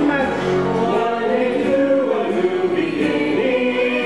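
A stage musical cast singing together in chorus, the notes shifting in pitch and then settling into long held notes near the end.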